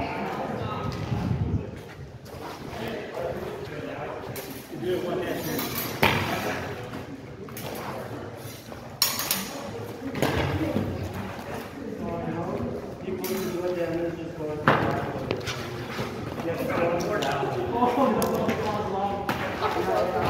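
Practice longswords clashing in sparring: about half a dozen sharp clacks at irregular intervals, with voices talking between the exchanges.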